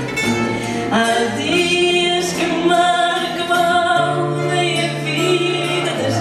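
Fado: a woman singing in long, wavering held notes, accompanied by a plucked Portuguese guitar and an acoustic guitar.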